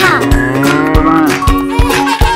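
A cow mooing once, one long call of about a second and a half, over background music with a steady beat.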